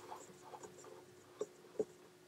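A light bulb being screwed by hand into a floor lamp's socket: faint scratchy scraping of the threads, with two small clicks in the second half.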